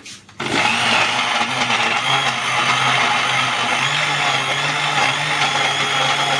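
Electric blender grinding tomatoes, green chillies and onion into a paste: the motor starts about half a second in and runs loud and steady, its pitch stepping up a little about four seconds in.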